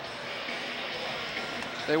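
Steady crowd noise in a hockey arena: an even murmur with no single sound standing out.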